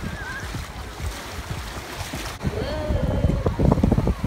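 Wind buffeting the microphone over the wash of shallow surf, the buffeting growing louder and more jolting in the last second.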